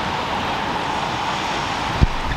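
Steady hiss of rain falling on wet paved ground.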